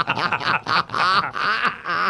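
Two men laughing loudly into microphones, in quick repeated bursts.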